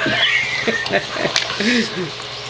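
Bulldogs playing tug-of-war over a chew antler: a high whine that slides down in pitch over most of the first second, a few sharp clicks, then short low grunts.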